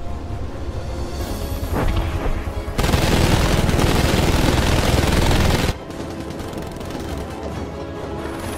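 Rapid machine-gun fire from guns mounted on a formation of military helicopters: one dense, continuous burst of about three seconds that starts a little before the midpoint and cuts off suddenly, over background film music.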